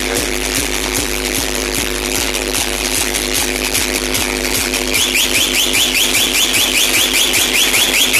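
Loud DJ music from large truck-mounted speaker stacks: heavy sustained bass under a steady beat. About five seconds in, a fast-repeating high, siren-like chirp joins the track.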